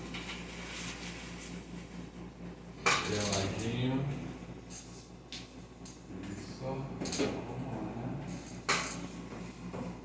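A few sharp clinks and knocks of small hard objects, with faint voices under a steady low hum.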